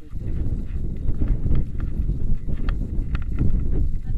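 Wind buffeting the action camera's microphone as a loud, uneven rumble, with scattered sharp clicks and rattles from a paragliding harness's buckles and straps being fastened.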